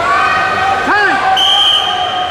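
Voices of coaches and spectators shouting in a sports hall, then a referee's whistle blast about one and a half seconds in, a steady shrill tone held until near the end, as the pin is called.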